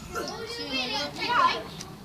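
Children's voices calling out and chattering, with one loud high shout that falls sharply in pitch about two-thirds of the way through.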